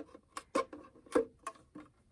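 Thin clear plastic bottle being handled in the hands, giving a handful of short, irregular clicks and crackles.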